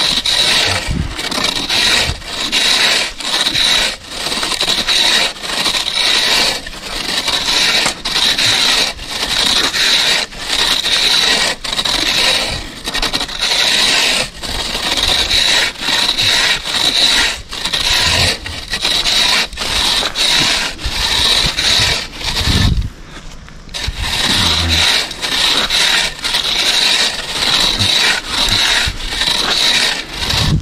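Metal landscape rake scraped back and forth over a compacted fine-gravel base, a steady run of gritty strokes at roughly one a second, with a short pause about three-quarters of the way through. The raking is final grading before synthetic turf goes down, scoring off the high spots to fill the low ones.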